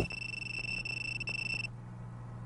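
A steady low hum with a thin high-pitched whine over it; the whine cuts off suddenly a little before the end while the hum carries on.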